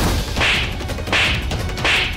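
Three dramatic whip-like swish hits from a TV-serial sound-effects track, about two-thirds of a second apart, over a low musical rumble.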